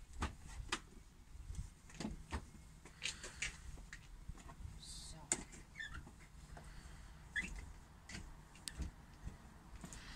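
Foam mattress toppers being unfolded and laid over the folded-down seats of a van, giving irregular soft knocks, bumps and rustling throughout.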